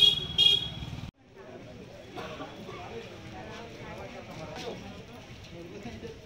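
Motorcycle engine running with its horn beeping twice in quick succession, then an abrupt cut to the murmur of indistinct voices in the street.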